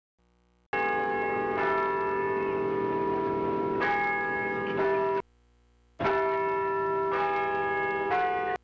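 Bells ringing: several held bell notes sound together, struck afresh a few times. One run lasts about four and a half seconds and then stops, and a second run begins about a second later.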